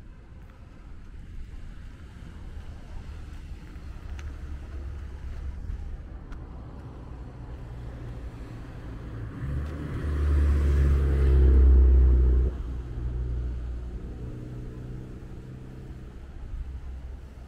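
A motor vehicle's engine running close by over a low rumble. It grows louder from the middle, is loudest for a couple of seconds, then drops off sharply and runs on more quietly.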